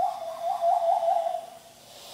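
Hand whistle blown through cupped hands: one hollow, owl-like hoot held at a steady pitch, wavering up and down in the middle, then fading out about three-quarters of the way in.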